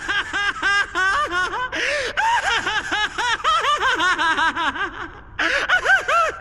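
A man's long, maniacal laugh: rapid 'ha-ha' syllables, about five a second, each rising and falling in pitch, with a brief break a little after five seconds before it picks up again.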